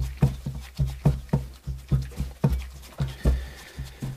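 Pastry dough being worked by hand in a glass bowl, a run of soft, rhythmic thumps at about three a second.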